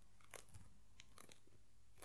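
A few faint, short crackles and soft clicks of a hand moving and touching close to the microphone, over near silence.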